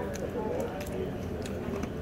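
Faint voices and low room noise of a restaurant dining room, with a few light clicks.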